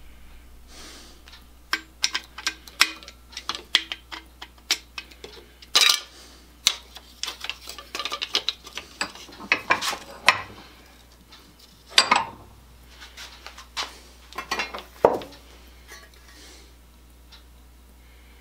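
Irregular metallic clicks, taps and clatters of a small sheet-metal rotisserie motor housing being handled and its cover worked off, with several louder knocks scattered through.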